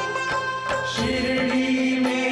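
Devotional background score with a chant-like sound, starting abruptly out of silence. A steady held drone note enters about a second in.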